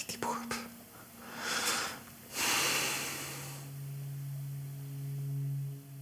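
A man's two heavy breaths as he pauses, too moved to go on speaking. A low steady tone sets in about halfway through and is held.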